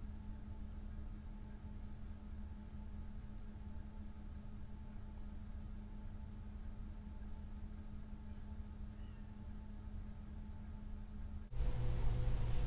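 Faint steady low hum with a constant pitch, unchanging throughout, cut off abruptly near the end.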